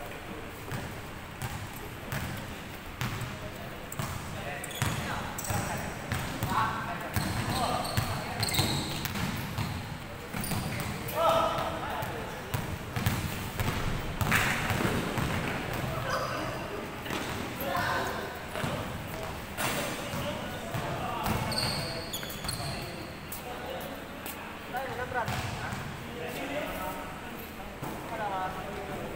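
Basketball game on a hardwood court in a large echoing gym: the ball bouncing and thudding, sneakers giving short high squeaks, and players calling out across the court.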